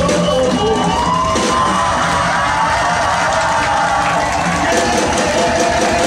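Band music playing continuously: an upbeat song with a melody line gliding over a steady beat.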